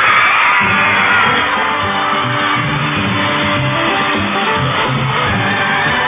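Band music with guitar and bass playing steadily, with the dull, narrow sound of an old television recording.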